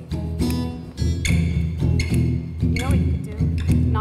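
Acoustic guitar strumming slow chords, about one strum a second, the chords ringing on between strokes.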